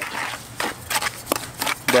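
Steel trowel scraping and stirring wet mortar in a plastic bucket: gritty scrapes with short knocks every third of a second or so.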